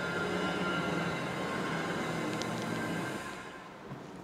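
Steady room noise with a hum, dropping in level about three seconds in.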